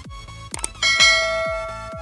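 Subscribe-button animation sound effects over electronic music with a steady beat: a quick double click about half a second in, then a bright bell ding that rings on and fades over about a second.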